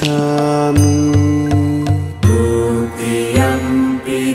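Devotional music with mantra-style chanting: long held sung notes that step from pitch to pitch over a low sustained tone, with a short run of evenly spaced low beats about a second in.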